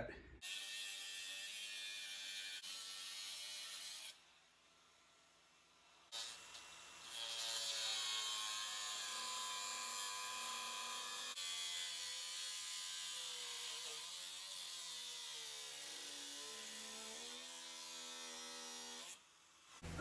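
Cordless angle grinder with a cut-off wheel cutting into a steel frame body mount, in two runs: a few seconds of grinding, a pause of about two seconds, then a long steady cut whose pitch sags and recovers near the end as the wheel bites.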